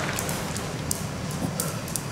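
Steady room hiss with a few light, sharp clicks scattered through it.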